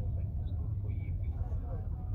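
Steady low rumble inside a moving Toyota car, with the faint, scattered voices of a crowd outside heard through the car.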